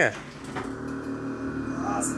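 Fiat Uno's air suspension being raised from a phone app: a steady mechanical hum of several tones.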